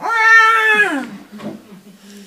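A man imitating a baby crying: one high wail, held for about a second and then falling in pitch.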